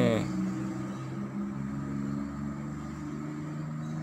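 A steady low engine hum with several held tones, running on evenly.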